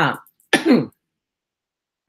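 A woman's short cough, a voiced burst of about half a second that falls in pitch.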